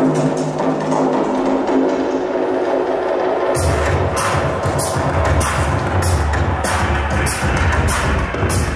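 Electronic music: held synth tones, then about halfway in a deep bass and sharp clicking percussion come in, about two hits a second.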